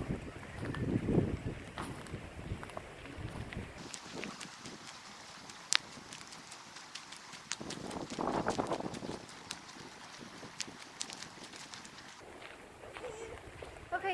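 Footsteps walking over dry fallen leaves on a dirt path: a run of light crunches and clicks, with one sharper click a little before halfway.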